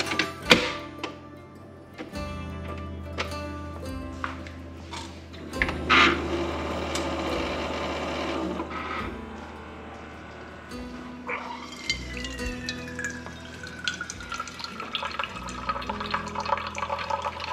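Background music over a Keurig coffee maker brewing, with hot coffee streaming into a steel tumbler.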